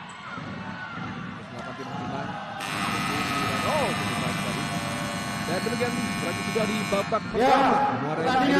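Futsal arena's timing buzzer sounding the end of the half: one steady, many-toned blast that starts abruptly a little over two seconds in and cuts off about four and a half seconds later, over crowd noise and voices in the hall.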